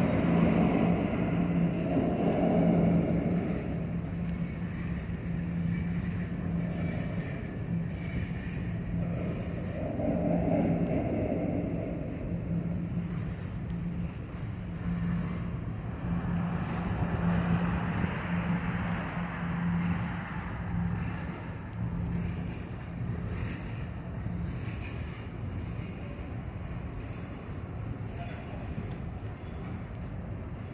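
Freight cars rolling slowly past on the rails during switching, with a steady low hum throughout and swells of rolling and wheel noise that come and go as the cars pass.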